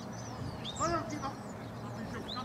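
One short, nasal shout from a player on the pitch, a little under a second in, over open-air ambience.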